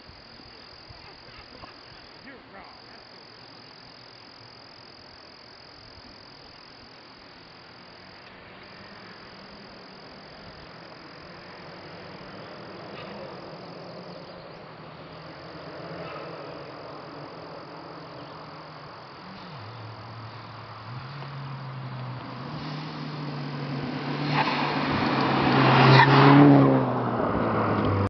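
A Volkswagen Golf R (Mk6) with a Scorpion aftermarket exhaust approaching along the road. Its turbocharged four-cylinder engine note grows steadily louder, stepping up in pitch over the last several seconds. It is joined by tyre noise and is loudest about two seconds before the end as the car comes close.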